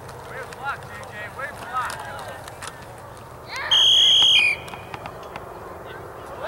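Referee's whistle blown once, a loud shrill blast just under a second long about three and a half seconds in, stopping the play after the tackle. Scattered shouts and calls from the sideline run around it.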